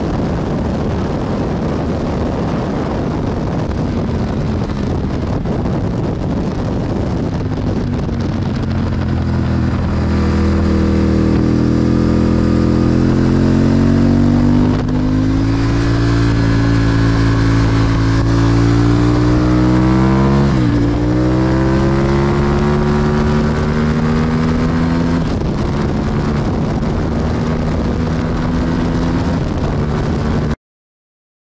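Honda Hornet 600's inline-four engine pulling hard on track, heard from an onboard camera with loud wind rush. The wind dominates at first; then the engine note comes through, falling and rising with the throttle, with one brief sharp drop in pitch about two-thirds of the way in.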